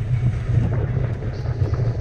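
Wind buffeting the camera microphone in a steady low rumble, caused by a fast slide down a steep sand dune.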